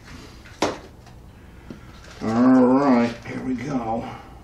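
A man humming a wordless tune in two short phrases, the first the louder and longer. Just over half a second in there is a single sharp click.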